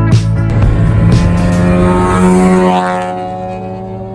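A car engine accelerating, its pitch climbing steadily, heard over the tail of a music track that stops in the first second or two.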